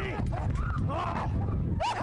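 People shouting and screaming in fright, high and strained voices breaking up one after another over a dense low rumble.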